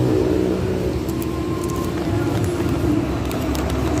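Steady rumble of nearby motor vehicles, with a few faint crackles from a bag of cassava chips being handled.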